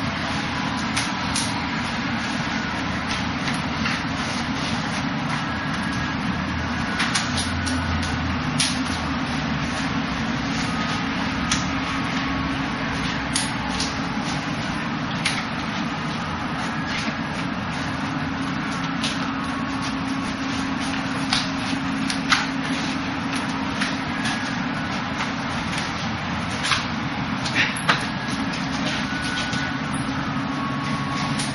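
Wing Chun gor sau sparring: irregular sharp slaps and taps of forearms and hands meeting as the two partners strike and block, over a steady rushing background noise.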